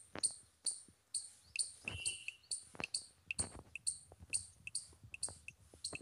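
Typing on a Samsung smartphone's on-screen keyboard: a string of short, sharp key clicks at about two to three a second, unevenly spaced.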